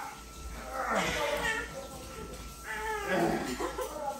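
A young child's high-pitched voice, in two stretches: one about a second in and a second near the end.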